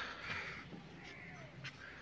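Crows cawing: one harsh caw at the start, then fainter caws about a second in and again near the end.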